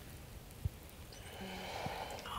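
Faint breathing in a quiet room, with one soft thump about a third of the way in.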